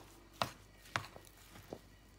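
Hands working crushed biscuit crumbs in a ceramic plate, with four or five short, sharp knocks of fingers or utensil against the plate.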